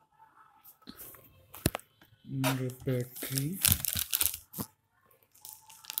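Handling noise as a laptop is turned over and moved: crinkling rustles and sharp clicks. A short stretch of voice comes in about two seconds in.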